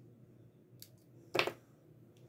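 Quiet handling while a lighter flame seals the cut end of a fabric headband cover, with one short sharp click about a second and a half in.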